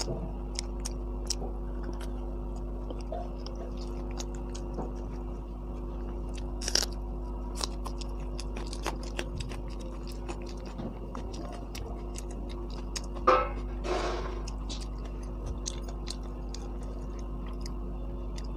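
Close-miked chewing of crisp fried samosa pastry, with small crunches and mouth clicks throughout and two louder crunches about a third and three-quarters of the way through. A steady low hum runs underneath.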